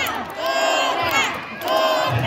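Lucha libre crowd shouting and cheering, many voices yelling at once, dipping briefly in the middle and swelling again near the end.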